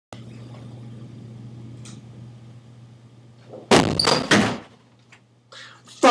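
A wooden interior door flung open: a cluster of three or so loud bangs and knocks in under a second, about two thirds of the way in, over a low steady hum.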